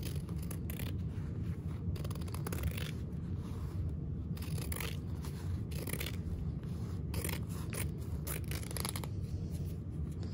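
Fabric shears trimming excess fusible interfacing from the edge of a fused fabric piece: a run of irregular snips, roughly one or two a second, as the blades close through the cloth.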